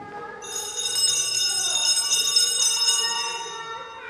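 Altar bells (sanctus bells) shaken, a bright jingling peal that starts about half a second in and fades out by about three seconds. It marks the elevation of the consecrated host after the words of institution at Mass.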